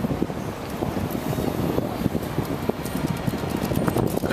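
Wind buffeting the microphone over the low rumble of a river tour boat under way.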